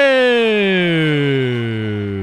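A man's long drawn-out vocal exclamation: a single unbroken note sliding steadily down from high to very low in pitch. It is a football commentator's reaction to a penalty kick sent high over the goal.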